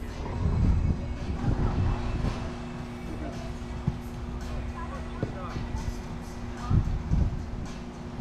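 A steady low hum with an uneven low rumble under it, faint voices, and a couple of light clicks about four and five seconds in.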